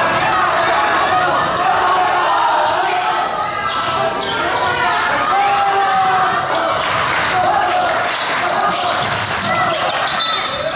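A basketball dribbled on a hardwood gym floor, with repeated bounces, under the constant chatter and calls of players and spectators echoing in a large hall.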